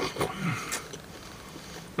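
A person chewing a bite of soft pretzel pizza crust, with wet mouth clicks and a short 'mm' hum falling in pitch in the first half second, then quieter chewing.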